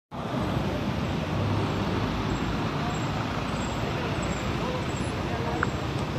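Steady road traffic noise, an even rumble and hiss, with faint voices in the background.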